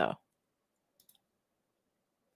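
Two or three faint, quick clicks of a computer mouse about a second in, after a spoken word ends.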